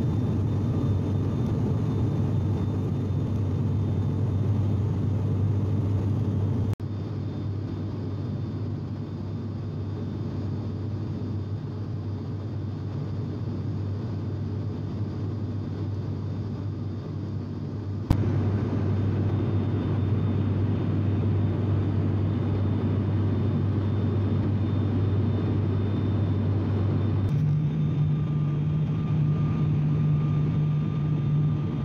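Cabin noise of a turboprop airliner in flight, a steady engine and propeller drone with a deep hum. The drone drops in level for a stretch in the middle, then comes back, and near the end its hum jumps abruptly to a higher pitch.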